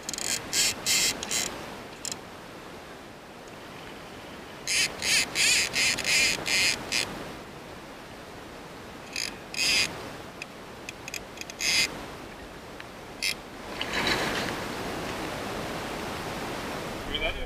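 Hardy Duchess fly reel's drag clicking off line in short bursts as a hooked Atlantic salmon pulls against the bent rod: several quick runs of rattling, the longest a few seconds in. Under the bursts runs the steady rush of the river.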